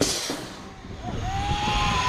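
Zip-line trolley released with a sharp clack and running down the steel cable: wind rushing over the camera microphone and a thin whine from the trolley wheels that steps up in pitch as it gathers speed.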